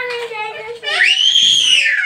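A small child's high-pitched scream, about a second long, rising and then falling in pitch, coming about a second in after a little talking.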